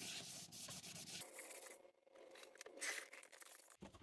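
A damp baby wipe rubbed back and forth over a vinyl doll play set, scrubbing off grime in faint, uneven strokes that pause briefly about halfway through.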